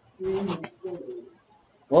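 A man's voice making two short, hum-like murmurs with no clear words, followed by the start of a short exclamation at the very end.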